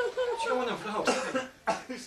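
Indistinct voice-like chatter broken by a cough about halfway through.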